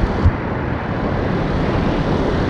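Steady low rumble of a jet airliner's engines on final approach, heard from a distance with wind on the microphone. There is a brief low thump just after the start.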